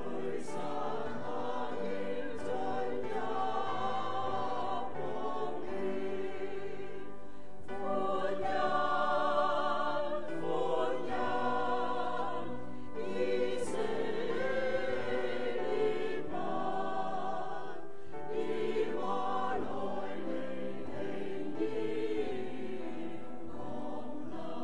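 A choir singing a hymn in long phrases, with vibrato on the held notes and short breaths between phrases.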